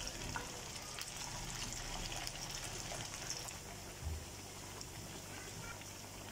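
Rice and vegetable kababs deep-frying in hot oil in a pan: a steady, fine crackling sizzle.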